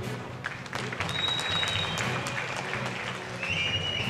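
Audience applauding during a pause in a speech, over a steady background music track. A couple of short, high steady tones sound, one about a second in and another near the end.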